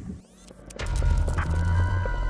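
Cartoon electric power-up sound effect: a robotic fist charging with electricity. A loud, low, throbbing hum with steady high tones over it starts suddenly, just under a second in, after a click.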